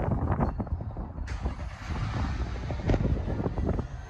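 BMW M235i's 2.0-litre four-cylinder engine running at low revs, with a steady low rumble. A few knocks come in the first second, and a wider hiss joins the engine about a second in.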